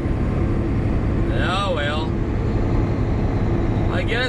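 Steady drone of a Volvo 780 semi-truck's Cummins ISX diesel and its tyres, heard inside the cab while cruising at highway speed.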